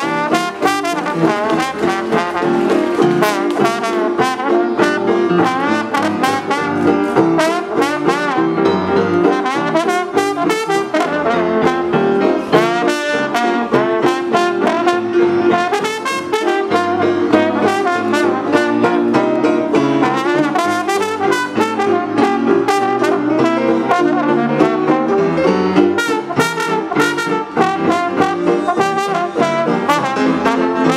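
Live traditional New Orleans jazz band, with a trombone playing the lead over the band and a regular beat of sharp drum strikes.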